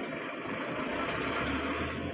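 A loaded wheeled stretcher trolley rattling as it is pushed along the floor rails of a Cessna Caravan's cargo cabin, with a low steady hum joining about a second and a half in.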